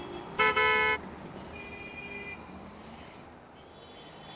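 Vehicle horn: one loud, flat toot about half a second long, then a fainter, higher horn toot shortly after.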